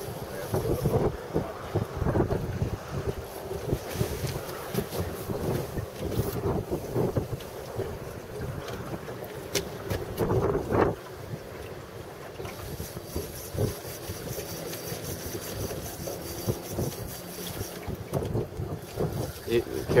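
Wind buffeting the microphone in uneven gusts over choppy open water, a low rumbling noise with no motor running.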